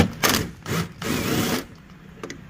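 Power drill with a 10 mm socket undoing a headlamp mounting bolt. It runs in three short bursts, the last one the longest.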